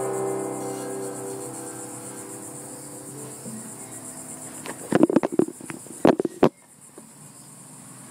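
The last strummed chord on a mandocello ringing out and fading over about three seconds. About five seconds in come a quick cluster of sharp knocks and bumps, then the sound drops off.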